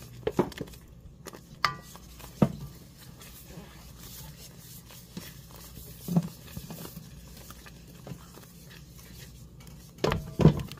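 Wooden spoon stirring Alfredo sauce base in a pan, a stick of butter melting in it: soft scraping with a few sharp knocks of the spoon against the pan, most in the first couple of seconds and one about six seconds in, over a low steady hum.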